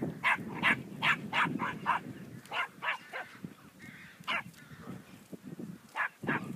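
A dog barking in short repeated barks: a quick run of about six in the first two seconds, three more around the three-second mark, and a last single bark near four and a half seconds.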